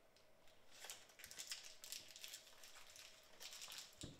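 Faint crinkling and crackling of a candy wrapper being handled, in irregular little ticks.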